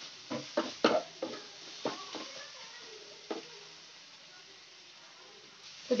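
Wooden spatula knocking and scraping against a nonstick kadai while onion and masala paste are stirred as they fry: about seven sharp taps in the first three and a half seconds, over a faint steady frying hiss.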